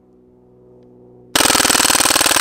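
Crosman AK-1 CO2 BB rifle firing a full-auto burst: a rapid, even stream of shots, many a second, that starts about a second and a half in.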